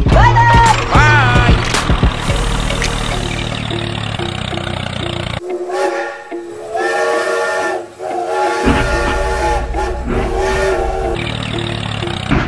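Toy steam locomotive's whistle sound, sounding in long held multi-note blasts through the second half, over background music.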